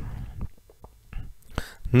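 Soft breathing and a faint trailing voice between spoken phrases, with a few faint light taps of a stylus on a tablet's glass screen.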